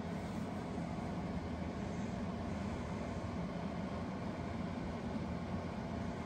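A steady low hum with a faint hiss above it, with no breaks or changes.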